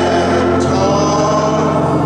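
Gospel singing in church: voices holding long notes together, with a steady organ underneath.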